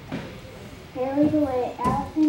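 A young girl's voice speaking into a microphone: a pause for about a second, then a few words.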